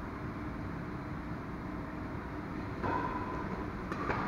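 Steady low rumble of a badminton hall's background, then activity picks up about three seconds in, and a sharp hit of a racket on a shuttlecock comes near the end as a rally gets going.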